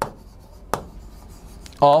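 Writing on a board: faint scratchy strokes with two sharp taps of the writing tip, about three-quarters of a second apart.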